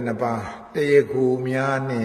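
A man chanting in a slow, intoned voice. He holds long notes at a nearly steady low pitch, in two phrases with a short break about half a second in.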